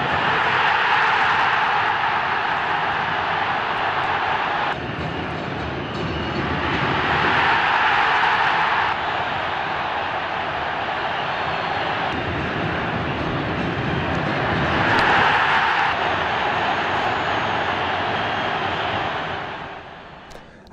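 Large football stadium crowd cheering and roaring, swelling as goals are scored and falling back between them, in several short clips cut together.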